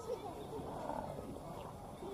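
Indistinct voices of people talking at a distance, no words clear.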